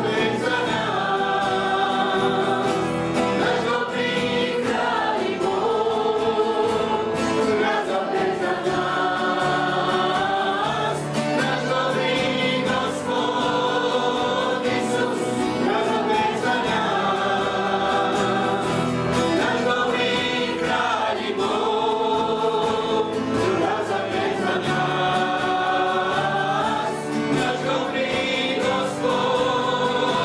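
A worship song sung by several voices together, men and women, with acoustic guitar and keyboard accompaniment, running on in long held phrases.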